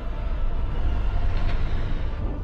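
A loud, deep rumble, strongest in the bass and swelling slightly after the first moment.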